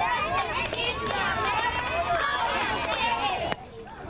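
Young girls' voices chanting a cheer together, several high voices overlapping. The chant breaks off abruptly with a click about three and a half seconds in.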